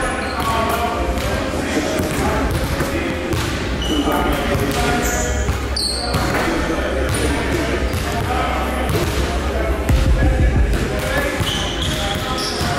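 Basketballs bouncing on a hardwood court, a string of separate thuds, with indistinct talking in the background.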